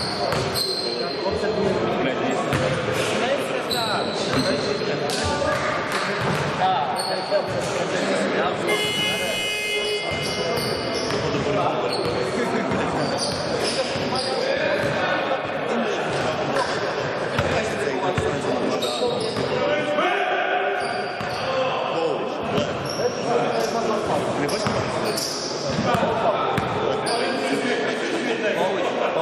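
Basketball bouncing on a hard court, with short high squeaks and indistinct voices in a large, echoing hall.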